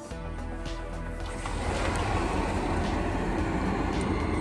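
Soft background music with held notes fades out in the first second and a half. A steady, noisy outdoor rumble from the balcony starts suddenly and grows louder, a little noisy out there.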